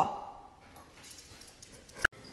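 A dog gives one short bark that rises in pitch, right at the start.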